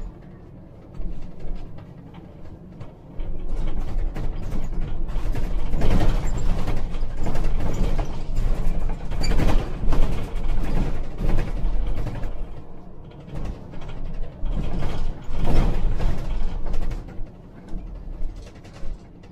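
Inside the cab of a moving Scania Citywide natural-gas articulated bus: a low engine and road rumble under a busy run of creaks and rattles from the body and fittings. The rattling picks up about three seconds in, eases off around thirteen seconds and returns briefly near the end.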